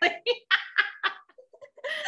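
Two women laughing together over a video call: a run of short, even laughs that grow fainter, picking up again near the end.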